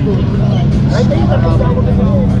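Busy street-market ambience: people talking in the background over a steady low drone.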